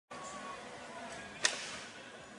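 Faint outdoor background noise with one sharp knock about one and a half seconds in.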